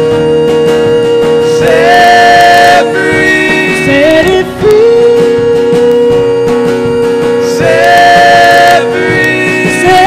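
Live band music: acoustic guitar, keyboard and drum kit, under a long held melody line that steps up to a higher note for about a second, twice, about six seconds apart.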